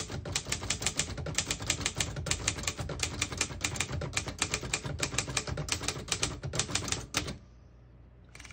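1954 Underwood Universal manual portable typewriter being typed on: a quick, steady run of typebar strikes against the platen, about seven keystrokes a second. The typing stops about seven seconds in.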